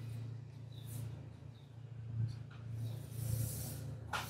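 Faint hissing strokes of a paintbrush working oil paint onto canvas, strongest near the end, over a steady low hum.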